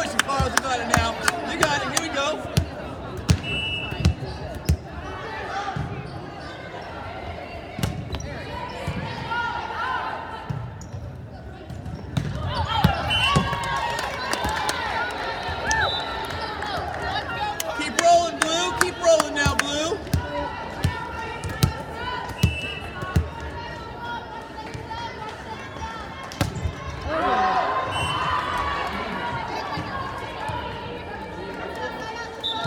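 A volleyball bouncing on a hardwood gym floor and being struck during play, giving a run of sharp smacks in the first few seconds and more scattered through. Shouting and cheering voices of players and spectators run under it, louder in the middle and again near the end.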